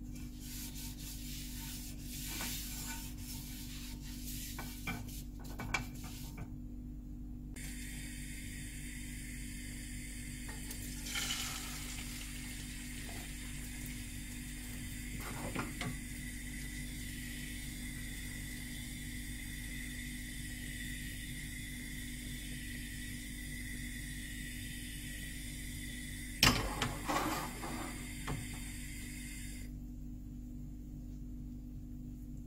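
A paper towel held in chopsticks rubbing oil over a nonstick frying pan, with small clicks, then a thin layer of beaten egg frying in the pan with a faint steady sizzle. Near the end a sharp knock and brief clatter as the pan is handled.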